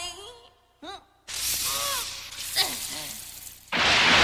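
Animated-film sound effects of water breaking through: a hissing spray starts about a second in under a man's startled exclamations, then a loud rush of gushing water bursts in suddenly near the end.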